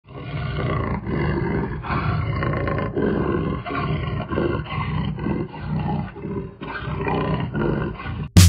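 A big cat's roaring growl used as a sound effect: a long run of rough, low growls, one after another about every half second to second.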